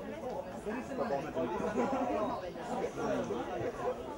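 Indistinct chatter of several people talking at once, no words standing out.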